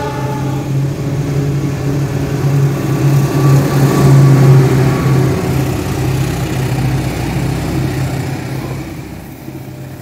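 The horn of a KAI CC206 diesel-electric locomotive ends just after the start, then its diesel engine drones steadily as it passes close by, loudest about four seconds in. The engine fades near the end, leaving the rumble of the passenger coaches rolling past.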